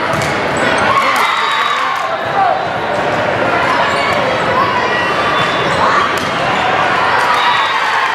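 Indoor volleyball rally in a large echoing gym: a steady mix of player and spectator voices, sneakers squeaking on the hardwood floor, and the sharp smack of the ball being hit and landing.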